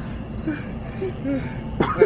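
A steady low background hum with a few faint, short vocal murmurs, then a sudden loud vocal burst, close to a throat-clearing, near the end as a person's voice starts up.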